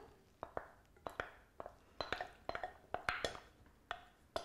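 Faint scattered taps and clinks, about a dozen short ones, as melted chocolate and butter is poured and scraped with a wooden spatula from a ceramic bowl into a stainless steel stand-mixer bowl.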